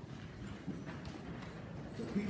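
A pause between spoken passages: quiet church room tone with a few soft clicks or knocks about a second in.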